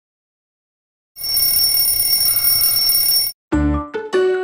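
Twin-bell alarm clock ringing its wake-up alarm, starting just over a second in, lasting about two seconds and cutting off suddenly. Bright children's music with a low thump starts near the end.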